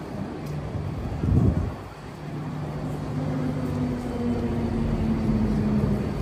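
Electric tram approaching and pulling up close, its steady motor hum growing louder over street background noise. A brief low rumble about a second and a half in.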